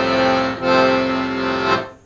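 Piano accordion sounding two sustained chords: a short one, a brief break about half a second in, then a second chord held for just over a second, ending shortly before the next words.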